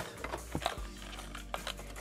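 Clear plastic lure packaging being handled and opened, with a few short sharp clicks and crinkles as a crankbait is pulled out of it.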